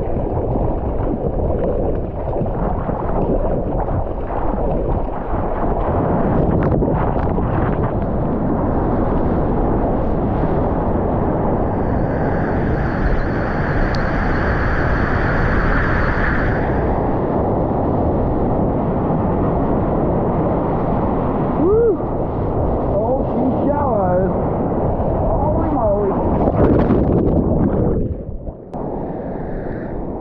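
Water rushing past a board-mounted action camera as a surfboard rides a wave through whitewater, with wind on the microphone. The spray is loudest about halfway through, then the rush carries on until it drops away near the end.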